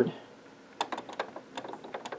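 Rapid clicking of the arrow key on a Brother HL-L2390DW laser printer's control panel, tapped quickly to scroll through characters while entering a password. The taps start about a second in and come about six a second.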